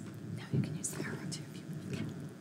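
Faint, indistinct voice, close to a whisper, over a low steady hum. A few short soft bits come about half a second and a second in.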